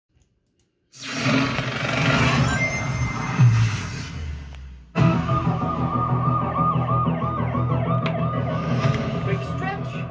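Siren wailing up and down about twice a second over a low steady music drone, heard through a film trailer's soundtrack. Before it, after a second of silence, a noisy rushing passage with a gliding tone and a low hit, which breaks off suddenly about five seconds in.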